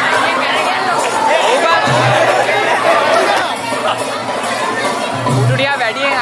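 Many people talking and calling out at once over music playing in the room.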